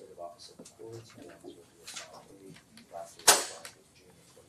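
Low, indistinct voices talking, with one sharp knock about three seconds in that is the loudest sound and dies away quickly.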